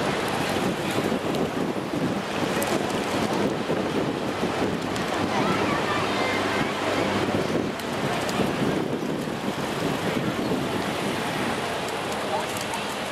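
Steady outdoor noise of wind on the microphone, with faint voices of onlookers in the background.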